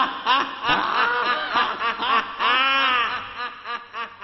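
A person laughing in a long run of pitched "ha" bursts, each rising and falling, trailing off near the end.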